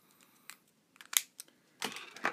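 A few small, sharp clicks and taps of drawing tools being handled on a desk, the sharpest a little over a second in, with a soft rustle near the end.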